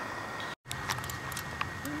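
Steady outdoor background noise on the water with a few faint clicks. The sound cuts out completely for a split second about halfway through.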